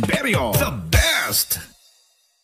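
A person's voice with its pitch sliding up and down, fading out to silence shortly before the end.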